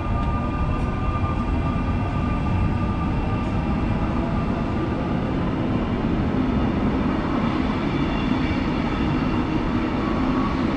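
SNCB electric multiple unit running past along the platform: a steady rumble of wheels on rail, with a thin, high, steady whine over it.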